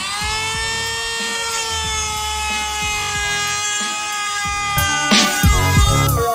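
Cordless rotary tool spinning up to a steady high whine, its pitch sagging slightly and wavering near the end as the bit cuts. Background music with a beat plays underneath.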